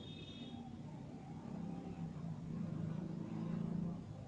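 Low, steady engine-like rumble, as from a motor vehicle, growing louder through the second half and ending abruptly.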